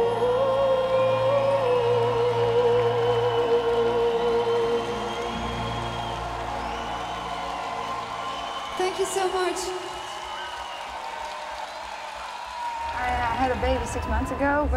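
Live symphonic metal band ending a song: a woman's long held sung note with vibrato over sustained keyboard chords, with the chords thinning and fading away in the second half. Speech starts near the end.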